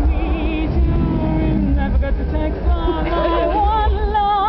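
A song: a woman's voice singing with wide vibrato over band accompaniment with a heavy bass.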